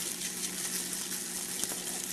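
Steady sizzling hiss of steak cooking on a red-hot electric coil burner lined with aluminum foil, with a faint steady low hum underneath.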